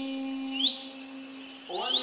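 A sung Arabic supplication (nasheed): one voice holds a long note, then starts a new rising phrase near the end. Short upward chirps sound over it about a third of the way in and again near the end.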